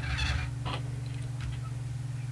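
A steady low electrical hum under a few faint, light taps of plastic toy pieces being moved on a tabletop.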